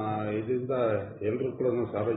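Speech only: a man talking in Kannada.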